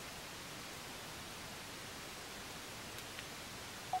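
Steady faint hiss with no music or voice, and a single faint tick about three seconds in.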